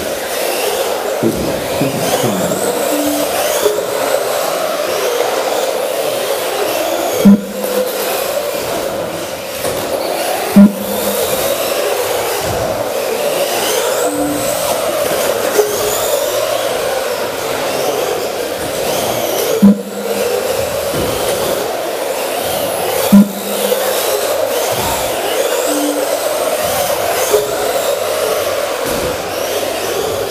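Vintage 2WD radio-controlled electric buggies racing, their motors and drivetrains whining and climbing in pitch again and again as they accelerate. Four brief, loud sharp knocks stand out above the whine.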